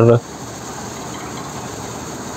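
Tractor-driven corn thresher running steadily, a continuous even rushing noise from the drum as it shells the cobs.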